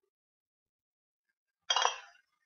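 Near silence, then a single brief clink against glass canning jars near the end.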